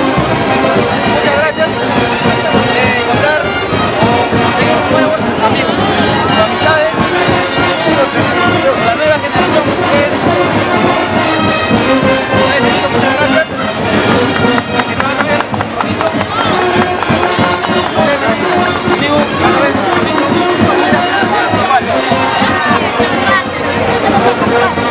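A brass band playing loudly and without a break, with people talking close by over the music.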